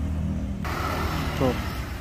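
An engine running steadily with a low, even hum that eases off around the middle.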